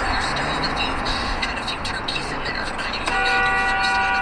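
Steady road and tyre noise inside a car cabin at freeway speed. About three seconds in, a car horn sounds, one steady held tone lasting over a second, warning a vehicle cutting into the lane close ahead.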